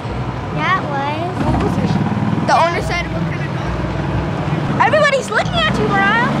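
A vehicle's motor running steadily, with a child's high voice calling out in short bursts three times.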